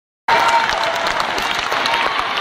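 Large theatre audience applauding, many hands clapping densely with scattered voices in the crowd; the sound cuts in abruptly just after the start.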